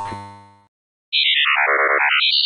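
Synthesized intro sound effects: a chord dies away, then after a brief gap a quick electronic tone steps down in pitch and back up again.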